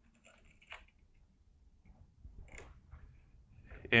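Faint clicks and handling noise from a digital torque wrench being taken up on a welded test piece clamped in a vise, over a low rumble.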